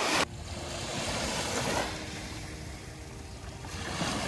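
Small waves washing onto a sandy beach: a steady rushing hiss of surf, louder for a moment at the start before it drops suddenly.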